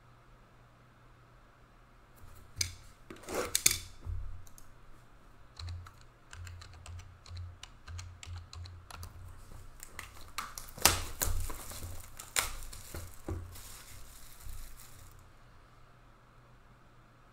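Typing on a computer keyboard: irregular runs of sharp key clicks with soft thumps on the desk. It starts about two seconds in and stops shortly before the end.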